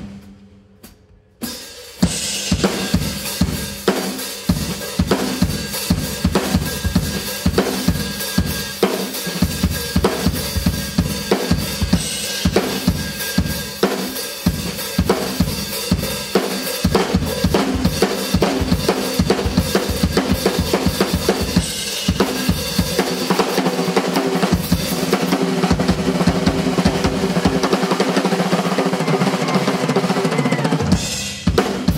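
Acoustic drum kit solo: one hit, a gap of under two seconds, then a steady, busy groove on bass drum, snare and cymbals that keeps going, the cymbals thickening near the end.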